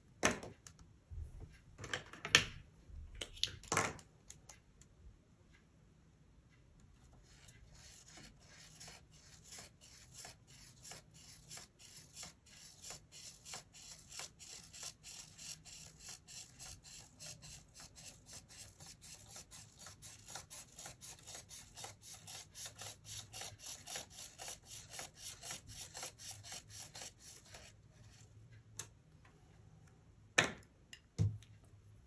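Felt-tip pen rubbing on paper as it drives a plastic Spirograph gear around its ring, in a quick, even rhythm of about four strokes a second that starts several seconds in and slowly grows louder. A few louder knocks from handling the pen and toy come near the start.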